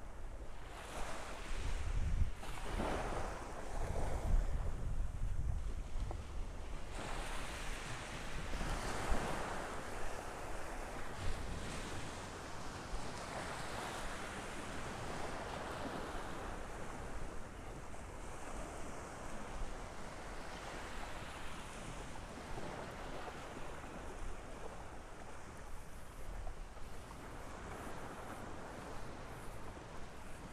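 Small Gulf of Mexico waves breaking and washing up the shore in gentle surges, with wind buffeting the microphone, heaviest a few seconds in.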